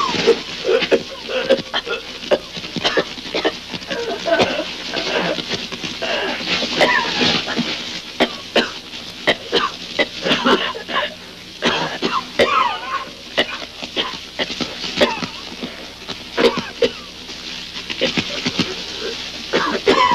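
Two men coughing and choking over and over in thick smoke, with short strained vocal gasps between the coughs.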